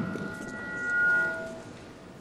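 Brief feedback ring from the podium microphone through the hall's PA: a few steady high tones that swell and then die away within about a second and a half.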